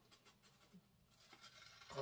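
Faint snips and rustle of scissors cutting through thin printer paper.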